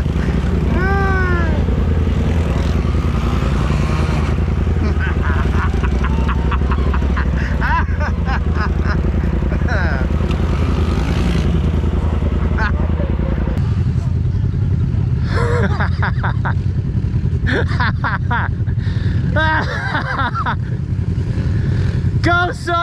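Dirt bike and side-by-side engines idling steadily, with the engine note changing a little over halfway through. People call out now and then over the engines.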